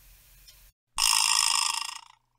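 Vibra-slap struck once: a sudden loud buzzing rattle of the metal teeth in its wooden box, dying away over about a second. Heard dry, with no reverb.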